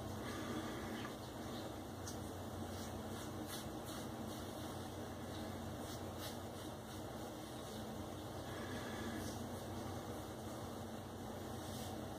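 Faint, scattered short scrapes and rubs on a freshly shaved scalp: fingertips feeling over the skin, then a safety razor's touch-up strokes. A low steady hum runs underneath.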